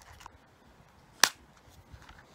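A single sharp plastic click a little past halfway, the snap of a small clear plastic compartment box's lid, with faint handling sounds around it.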